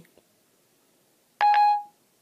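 Siri's electronic chime on an iPhone 4S: one short, clear tone that sets in sharply and fades after about half a second. It marks Siri ending its listening to a spoken question.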